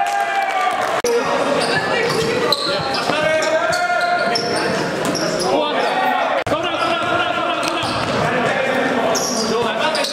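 Live basketball game sound in a gymnasium: a ball bouncing on the hardwood and players' indistinct voices echoing around the hall, broken by two abrupt cuts.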